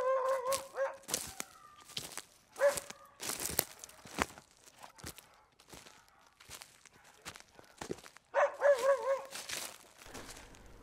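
A dog whining in short wavering calls near the start and again near the end, among irregular crunching footsteps in snow.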